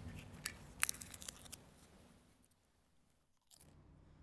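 Faint, crisp crunching of a thin altar-bread host being chewed during the priest's communion: a cluster of small crackles in the first second and a half, thinning out.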